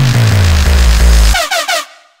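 Electronic drum and bass track. A deep bass tone slides down in pitch under fast drums. Then the bass cuts out about one and a half seconds in, leaving a few short chirping stabs before the music drops away to silence at the end.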